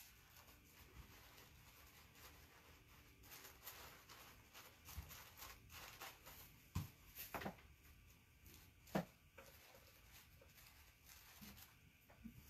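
Near silence, with faint rustling of tissue paper being handled and pressed into place by hand. A few soft taps come in the middle.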